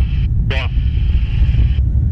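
Alisport Yuma ultralight rolling out on a grass strip after landing, its engine and propeller turning slowly and the airframe giving a heavy, steady rumble through the cockpit. A brief voice sounds about half a second in, and a hiss cuts off near the end.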